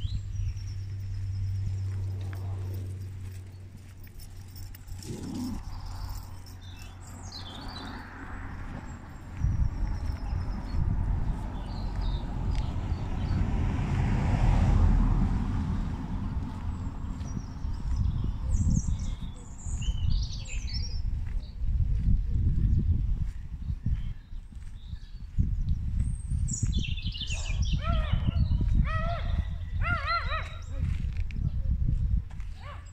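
Small birds chirping and singing in short high phrases, with wind gusting on the microphone from about a third of the way in, and a vehicle passing on the road around the middle.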